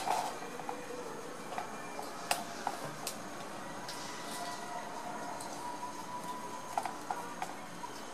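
Small sharp clicks of metal tweezers tapping a clear plastic box and picking up half pearls, scattered and irregular, with a quick run of three near the end, over a steady background hiss.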